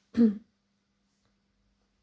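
A woman clears her throat once, briefly, just after the start.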